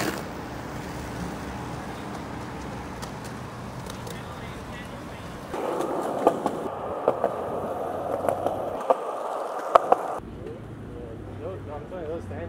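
Outdoor street noise, then about five seconds in, skateboard wheels rolling on a concrete sidewalk, with several sharp clacks from the boards, stopping suddenly about ten seconds in.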